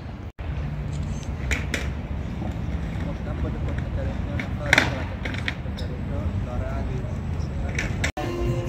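Outdoor city-square ambience: a steady low rumble with faint voices of people nearby now and then, loudest a little before the five-second mark.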